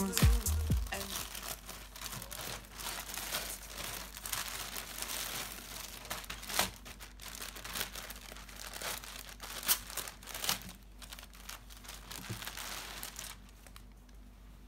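Thin plastic mailer bag crinkling and rustling irregularly as it is handled and opened, with a few sharper crackles. The tail of a song ends in the first second.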